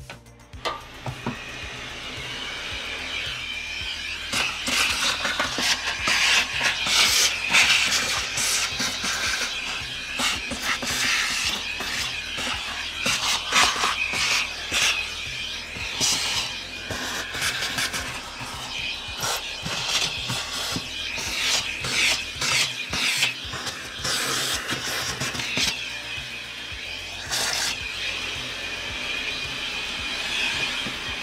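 A vacuum cleaner sucking through a hose and crevice tool, picking up caked-on dirt from a vacuum's sole plate, with many sharp crackles and ticks of debris rattling through the hose. It starts about a second in.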